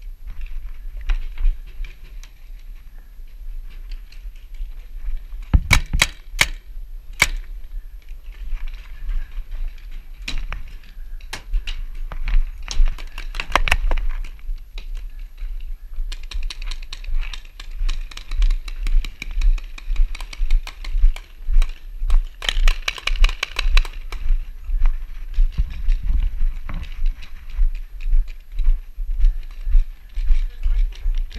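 Paintball markers firing: a handful of sharp pops, then long runs of rapid pops in the second half, over a low steady rumble.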